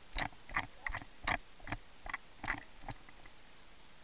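Footsteps crunching through dry grass and brush, about two to three steps a second, fading and stopping about three seconds in.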